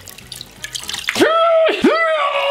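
Water splashing and dripping as a pillowcase is dunked and squeezed in a bucket of water. About a second in, a drawn-out voice comes in over it and is the loudest sound.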